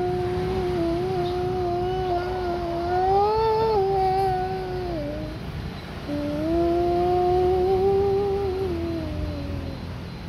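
A man's voice chanting the adhan, the Islamic call to prayer, in long drawn-out held notes. The first phrase is held on one note, swells and wavers in pitch about three to four seconds in, then falls away about five seconds in. After a short breath a second long phrase is held for nearly four seconds.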